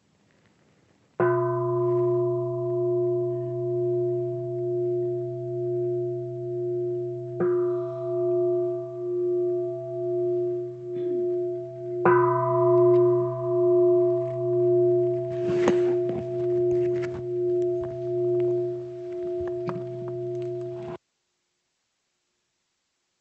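A large meditation bell struck three times, each stroke a bright attack that settles into a long, deep ringing with a slow wavering beat. Some soft rustling comes in under the ring after the third stroke, and the ringing cuts off suddenly near the end.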